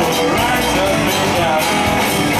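Blues-rock band playing live: a guitar line with bending notes over strummed acoustic guitar, bass and drums.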